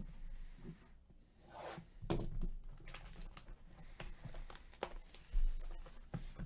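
Sealed Upper Deck Engrained hockey hobby box being opened by gloved hands: rustling, tearing and crinkling of the box and its packaging in a string of short strokes, with one heavier thump about five and a half seconds in.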